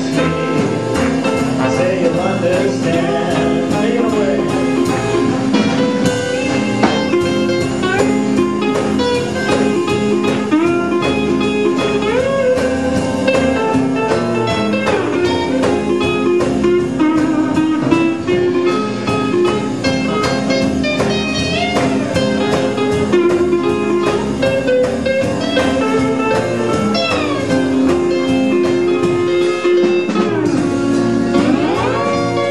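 Acoustic guitar strumming rhythm under a lap steel guitar playing the lead, its notes sliding up and down in pitch, in an instrumental break of a klezmer swing tune.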